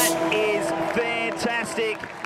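Excited voices of a race broadcast come in short bursts over a crowd, with a held note of background music sounding steadily underneath.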